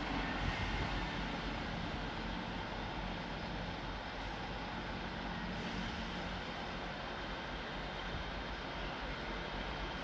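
Class 158 diesel multiple unit running slowly past at low power, a steady low drone from its diesel engines with a hum that fades out about six seconds in.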